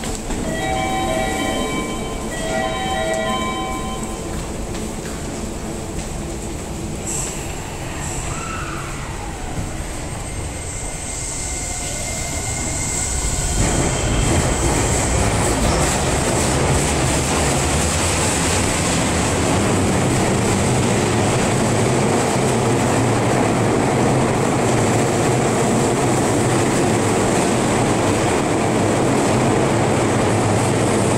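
Tokyu electric commuter train at a station: two short electronic chimes near the start, a brief whine that rises and falls, then the train's running noise swells from about halfway and stays loud.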